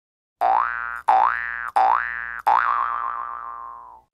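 Springy boing sound effect sounded four times, each a quick upward glide in pitch about two thirds of a second apart. The last one rings on with a wobble and fades out over about a second and a half.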